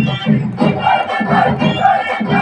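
Loud live festival drumming by a drum troupe, a fast steady beat with a held melody line above it and crowd voices mixed in.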